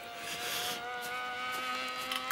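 Small radio-controlled model plane's engine: a steady, high-pitched droning buzz from the cartoon soundtrack.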